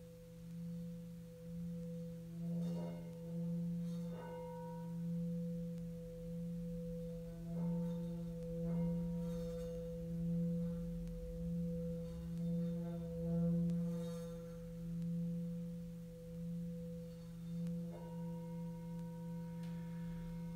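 Hand-held Tibetan singing bowl played with a mallet at its rim, sounding a steady low hum with a higher ringing tone above it, pulsing slowly in loudness. Several light strikes of the mallet set brighter, higher tones ringing over the hum.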